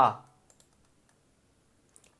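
Faint computer mouse clicks: two quick ones about half a second in and one more near the end, with near silence between. A spoken word trails off at the very start.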